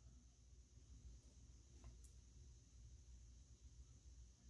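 Near silence: faint room tone with a low hum, and a faint click about two seconds in.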